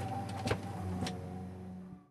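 A steady low hum with three short clicks, fading down and cutting off at the end.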